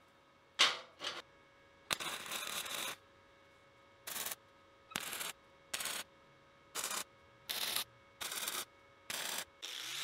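Flux-core wire-feed welder striking a series of short tack welds: brief bursts of arc noise, about one a second, with a longer one of about a second early on.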